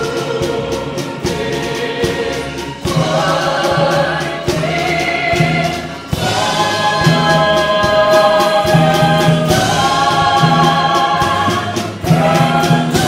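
Vocal soloists singing a patriotic song in harmony with a live pops orchestra. The music swells twice, and the voices hold long notes over the orchestra in the second half.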